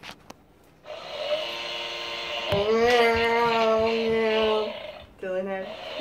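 Toy weed trimmer running with its whirring motor and electronic engine noise: a steady buzzing hum that starts about a second in and gets louder about two and a half seconds in. It breaks off briefly near the end, then starts again.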